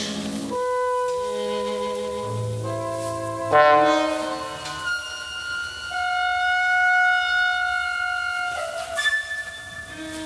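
Modern chamber ensemble of seven instruments playing an instrumental passage of long held notes layered into chords. A sharp accented chord comes about three and a half seconds in, then a long high note is held for several seconds.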